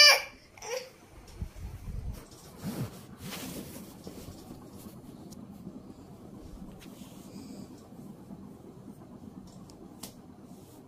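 A small child's high-pitched squeal right at the start and another brief vocal sound just after, then bumps and rustles of the phone being handled, and a low steady room noise for the rest.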